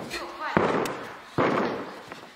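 A gymnast's feet landing on a sprung gymnastics floor during repeated tuck jumps: two hard thuds about a second apart, each echoing briefly in a large hall.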